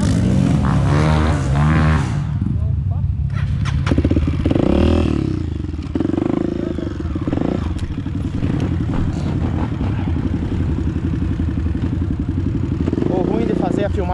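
Dirt bike engine running close by, rising and falling a few times in the first five seconds, then settling into a steady low-speed run.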